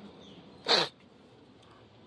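One quick, sharp sniff through the nose about two-thirds of a second in, against faint room tone.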